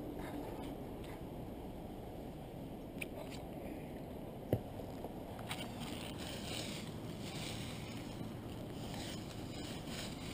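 Dry leaf litter crunching and rustling in repeated bursts from about halfway through, as someone moves through it gathering sticks, over a steady low rumble. A single sharp click about four and a half seconds in.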